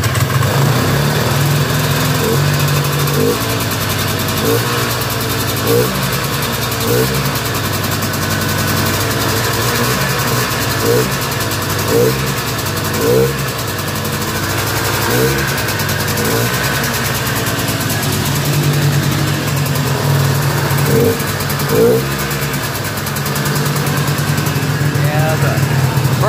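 Yamaha Enticer 250 snowmobile's air-cooled single-cylinder two-stroke engine running steadily just after a pull start, with brief rises in revs every second or so. The owner says it only runs on choke because the carburetor needs sorting, and it has no air filter fitted.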